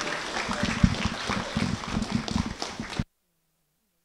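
Audience applauding, dying down, then cut off abruptly about three seconds in.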